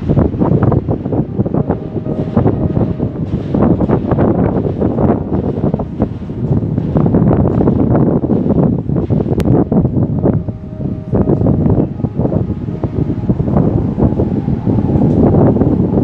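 Wind buffeting the microphone: loud, gusting rumble and roar that fluctuates constantly.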